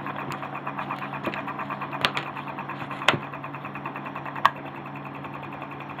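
Homemade magnet pulse motor running, its heavy disc spinning between two coils: the contact breakers firing the coils make a fast, even ticking over a steady low hum, with a few louder clicks. The breakers are sparking as they switch the coils.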